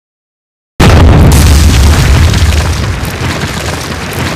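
Silence, then a sudden deep boom about a second in, a cinematic impact hit with a heavy low rumble that slowly dies away.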